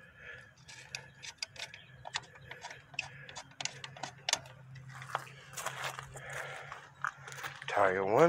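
Lug nuts being spun on by hand onto a truck wheel's studs: a run of irregular light metallic clicks over a low steady hum.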